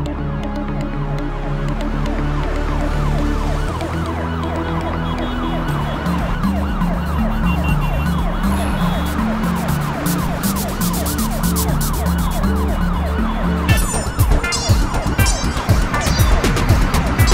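Ambulance siren wailing in rapid, repeated rising-and-falling sweeps over background music with a bass line. Near the end a flurry of sharp clattering hits comes in over it.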